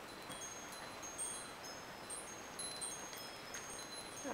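Faint, scattered high chime-like tones at several different pitches, each ringing briefly and overlapping, over a steady low hiss.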